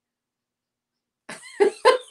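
Dead silence for over a second, then near the end a woman's short run of quick vocal bursts, about four a second, leading into speech.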